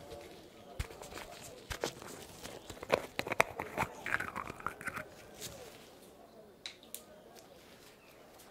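Gloved hands handling a small plastic jar of Vicks VapoRub: a run of close taps, clicks and glove rustles, busiest a little after the middle, then a few separate clicks.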